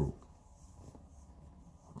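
Near silence: faint room tone in a pause between spoken sentences, with the last syllable of a man's voice dying away at the very start.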